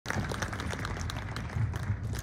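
Applause from a small outdoor audience: many separate, irregular hand claps.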